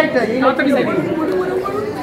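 People chattering, several voices talking over one another.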